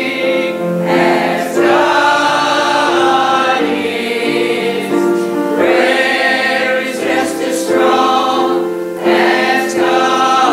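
Mixed church choir of men and women singing a gospel song, in held phrases that begin anew every few seconds.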